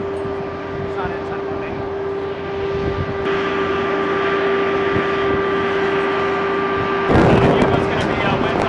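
Steady whine of flight-line machinery beside a parked aircraft, one held tone with overtones, over faint background voices. About seven seconds in it turns louder and rougher, with wind rumbling on the microphone and nearby voices.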